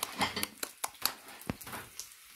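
Bacon frying in a non-stick frying pan, crackling with irregular little pops and spits, one sharper pop about one and a half seconds in.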